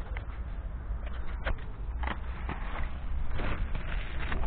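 A thin plastic bag holding cherries rustling and crinkling as it is handled and opened, in a series of short sharp crackles over a steady low rumble of handling noise on the microphone.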